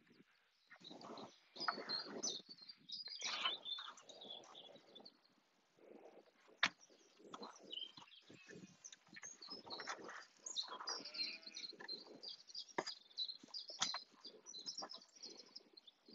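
Faint outdoor ambience: small birds chirping on and off, a sheep bleating about eleven seconds in, and a few light knocks as a wooden-framed net panel is lifted and stood up.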